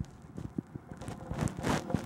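Wind buffeting the camera microphone in uneven low rumbles, with a few soft knocks.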